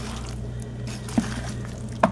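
Wet squishing of mayonnaise-coated bow-tie pasta as hands mix it in a glass bowl, with one light click about halfway through.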